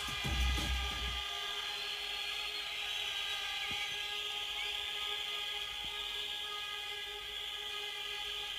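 Drum and bass music at a rave: the beats stop about a second in, leaving a quieter, steady held synth chord with a faint hiss.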